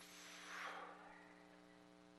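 Near silence: room tone with a faint steady hum and a brief soft rustle about half a second in.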